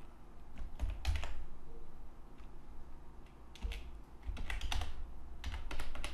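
Typing on a computer keyboard: sharp keystrokes in short irregular runs with pauses between, as a short line of text is entered.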